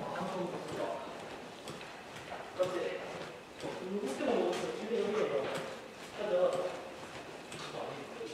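Footsteps on a hard corridor floor, about two steps a second, with voices talking over them from about two and a half seconds in to near the end.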